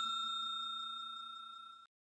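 A bell-chime sound effect ringing out, several steady tones slowly fading until they cut off near the end.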